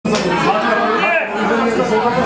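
Crowd chatter: several voices talking over one another.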